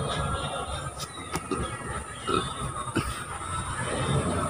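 Faint outdoor background noise with a few soft clicks scattered through it, typical of a handheld phone being moved and carried while walking.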